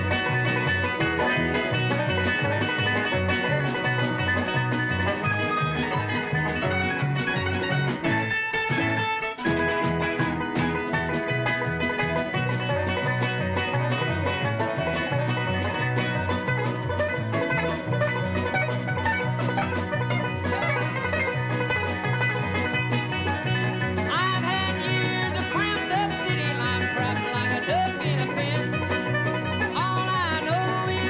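Bluegrass band playing live, with a five-string resonator banjo picking a fast lead over a steady bass beat. The sound thins briefly about eight seconds in, and gliding notes come in near the end.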